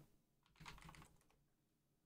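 Faint computer keyboard typing: a short run of key clicks about half a second in as a ticker symbol is typed, otherwise near silence.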